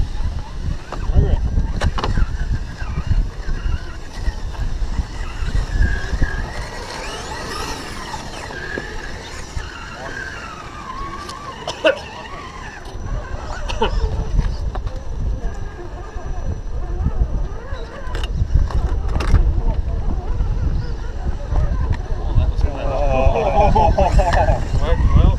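Electric motor and gearbox of a scale RC rock crawler whining as it crawls over rock, with occasional clicks and knocks from the chassis and tyres. Wind rumbles on the microphone throughout.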